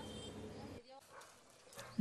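Faint steady room hiss with a low hum, dropping to near silence a little under halfway through.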